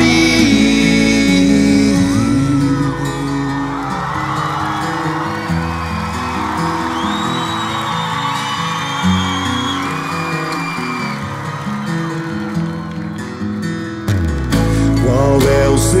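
Live acoustic pop-rock band playing an instrumental passage between sung verses, with acoustic guitar and drums. The bass drops away about four seconds in, while high voices or whoops rise over it, and the full band comes back in just before the next verse.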